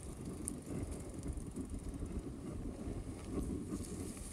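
Mountain bike riding along a dirt trail strewn with dry leaves: steady rumble of the tyres rolling over the ground, with wind buffeting the microphone and a few small clicks.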